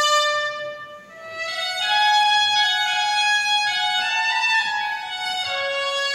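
Dulzaina, the Castilian double-reed shawm, playing a melody one note at a time, with a brief break between phrases about a second in.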